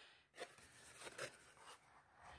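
Near silence, with a couple of faint, short rustles and clicks from a carded toy in a clear plastic blister pack being handled.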